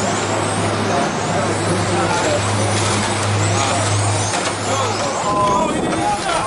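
Electric RC touring cars racing on asphalt, their brushless motors giving thin, high-pitched whines that rise and fall as they accelerate and brake, over a loud, steady noisy background. A steady low hum runs underneath and fades out about five seconds in.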